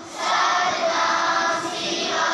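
A large group of children singing a devotional song together in unison. A new sung phrase starts just after a brief pause at the very beginning.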